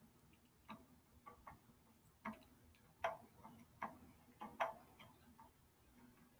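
A clock ticking faintly, a tick roughly every three-quarters of a second.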